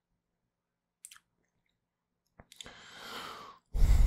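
Quiet room tone with small clicks about a second in and again about two and a half seconds in. These are followed by a soft breath into a close microphone lasting about a second, before speech starts at the very end.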